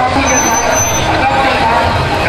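Busy street ambience: vehicle traffic and people talking. A thin high-pitched tone sounds for about the first second.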